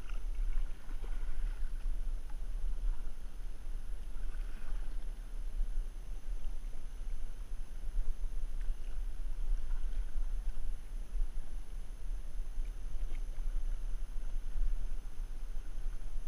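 Single-bladed paddle stroking the water beside a small canoe, with soft splashes now and then, under steady low wind noise on the microphone.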